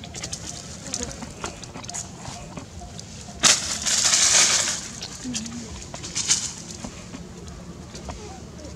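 Dry fallen leaves crunching and rustling, with scattered small crackles and one loud burst of crunching about three and a half seconds in that lasts about a second.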